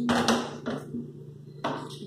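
Aluminium pressure-cooker lid handled and set down on a gas stove's grate: metal knocks and scrapes, the loudest right at the start, a smaller one just after, and another sharp knock near the end.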